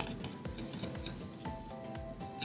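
Background music with held notes, over soft scraping of a spoon against a small bowl as a thick melted chocolate mixture is scraped out into a mixing bowl.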